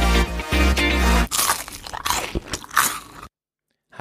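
Intro music with deep bass notes ends about a second in. About two seconds of crunching noises follow, then a brief silence.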